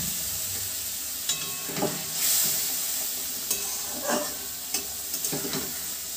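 Thick tomato and poppy-seed fish gravy sizzling steadily in a kadai, the water just added bubbling in the hot pan. A spatula scrapes and knocks against the pan now and then as it is stirred.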